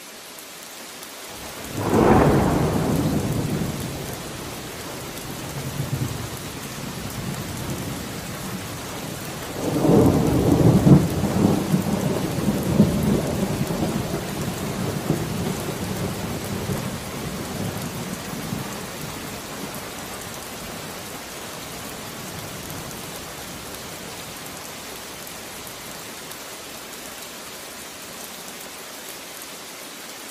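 A thunderstorm: steady rain with two rolls of thunder. The first roll comes about two seconds in and fades over a few seconds. The second, louder and longer, rumbles and crackles from about ten seconds in for several seconds.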